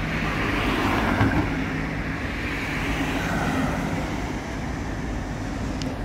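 Road traffic: a passing car's tyre and engine noise swells in the first couple of seconds and slowly fades, over a steady low engine drone.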